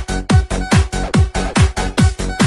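Budots electronic dance remix: a fast, steady kick-drum beat, each kick a deep boom that drops in pitch, about five in two seconds, under a held synth tone.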